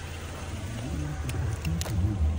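Low steady rumble outdoors, with faint voices and a couple of sharp clicks near the end.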